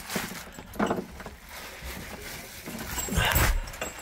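Wet plastic bags and rubbish pulled off a fouled narrowboat propeller rustling and being dumped onto the deck, with a thud a little after three seconds in. A brief vocal grunt about a second in.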